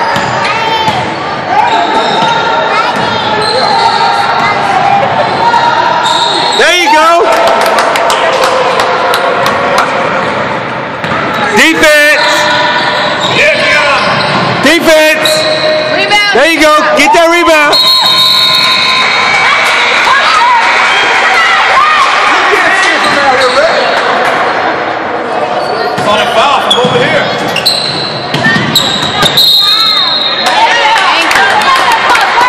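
Indoor basketball game sounds: a basketball bouncing on the hardwood court, sneakers squeaking in short high-pitched squeals, and players' and spectators' voices, all echoing in a large gym.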